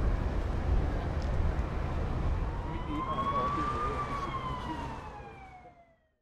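Emergency vehicle siren giving one slow wail that rises in pitch from about two and a half seconds in, then falls away, over a low street rumble. The sound fades out near the end.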